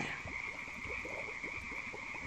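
Quiet steady background ambience: a continuous high, even tone with faint scattered low pops.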